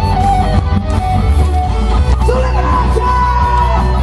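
Loud live band music heard from within the crowd: amplified guitar over a heavy steady bass, with a voice carrying a wavering melody line.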